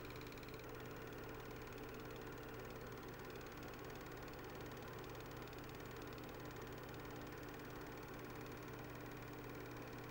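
Faint, steady low hum with a few even, unchanging tones over light hiss: the background hum of a home narration recording, with no event standing out.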